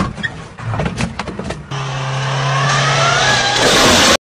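A second or so of clicks and scrapes from a car wheel at a kerb. From about two seconds in, a car engine revs with its pitch rising over a steady rush of tyres sliding on loose dirt.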